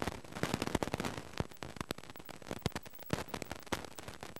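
Irregular crackling and popping, many sharp clicks a second with no steady sound beneath them: interference on a faulty audio track that cuts in and out.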